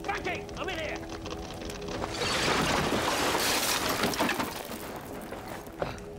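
Sustained notes of dramatic background music under a loud rush of crackling noise from fire and falling debris, which swells about two seconds in and fades by about five seconds.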